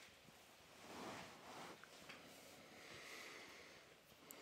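Near silence: faint room tone, with one soft, brief swell of noise about a second in.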